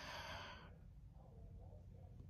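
A woman's sighing breath that fades out within the first second, then near silence with a faint low hum.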